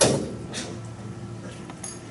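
A sharp knock against the perforated metal frame of a small construction-kit compound machine as it is handled, ringing briefly, followed by a fainter click about half a second later and another near the end.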